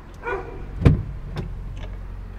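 A car idling low and steady, with a single heavy thump about a second in and a fainter knock shortly after.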